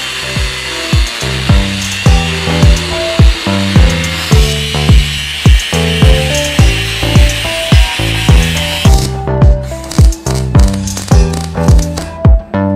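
Background music with a steady beat over an angle grinder cutting steel; the grinder's hiss stops about nine seconds in.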